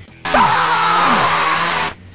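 A harsh, distorted vocal scream, an inserted sound effect, loud and sudden, lasting about a second and a half with its pitch falling twice.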